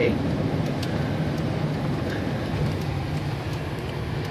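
Inside a car's cabin: a steady low hum of the engine and tyres as it rolls slowly over a wet parking lot.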